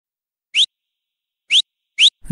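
Three short whistles about a second apart, each a quick upward glide in pitch, with silence between them. The last one comes right at the end, just before the song's music kicks in.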